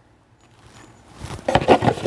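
Near silence for about a second, then quiet rustling and scraping as a cardboard gift box is handled and set down.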